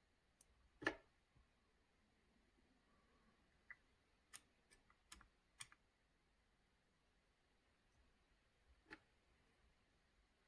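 A few faint, sharp clicks of a screwdriver turning a chainsaw carburetor's mixture screw in to its seat, counting turns to find how far out it was set. The clearest click comes about a second in, a small cluster falls around the middle, and one more comes near the end, with near silence between.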